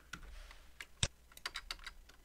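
Computer keyboard keystrokes, a few scattered taps with one sharper key press about a second in, then a quick run of lighter taps, as characters are deleted from a file name.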